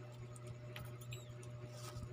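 Metal spoon scraping and tapping inside a boiled duck egg's shell (balut), faint: a couple of light clicks and a short squeak about a second in, over a steady low hum.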